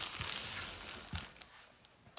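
Thin plastic produce bag holding apples crinkling as it is gripped and lifted off a table, with a soft knock about a second in; the rustling fades away in the second half.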